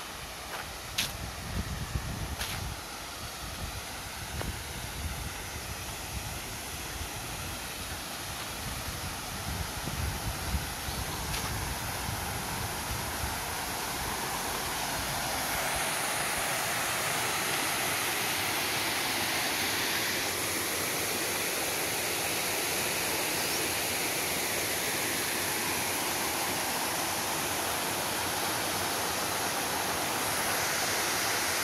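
Rush of a small waterfall, about a 3 m drop into a pool, growing louder as it is approached and holding steady through the second half. Low rumbling and a few sharp clicks come through in the first half.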